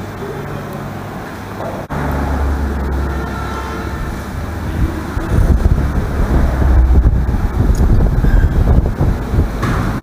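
Air from a pedestal fan buffeting the camera microphone: a low, gusty rumble that steps up about two seconds in and grows louder and more uneven in the second half.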